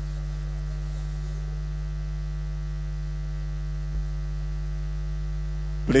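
Steady low electrical mains hum on the audio feed, with a faint short bump about four seconds in.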